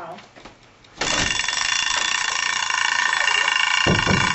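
Electric bell ringing steadily for about four seconds. It starts abruptly about a second in and cuts off suddenly, with a couple of low thumps near its start and end.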